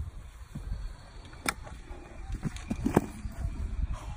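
Low rumble of a golf cart moving over grass, with two sharp knocks about a second and a half apart as the rider tumbles out onto the turf.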